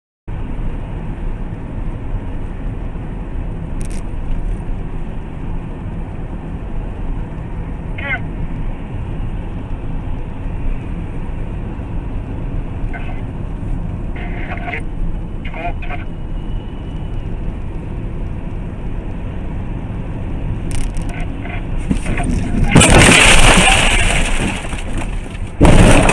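Car driving with steady road and engine noise, then near the end a loud crash lasting about two seconds, followed by a second sharp impact.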